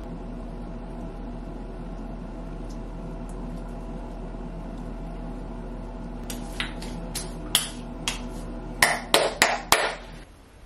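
Fingertips patting a wet sheet mask onto the face: a few light slaps from about six seconds in, then a quick run of louder pats near the end.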